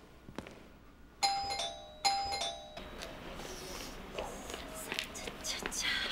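Electronic apartment doorbell chiming twice, a falling two-note ding-dong about a second in and again just under a second later.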